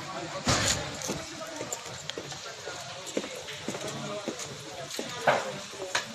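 Footsteps on a concrete pavement, a string of irregular short knocks, under indistinct voices. A louder rushing burst comes about half a second in and another near the end.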